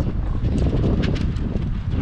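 Wind buffeting the microphone, a steady low rumble, with a few light clicks scattered through it.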